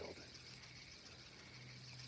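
Near silence: a faint steady background hiss with a low hum.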